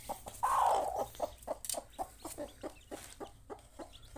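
A broody hen sitting on her eggs and newly hatched chicks gives a rough, drawn-out squawk about half a second in, then a quick run of short clucks, about four or five a second. It is a broody hen's defensive protest at a hand reaching into her nest.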